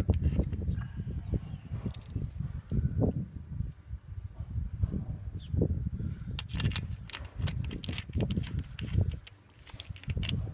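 Wind buffeting the microphone in uneven gusts, with scattered clicks and taps of hand tools against the compressor's oil sight-glass fitting, busiest about two-thirds of the way in.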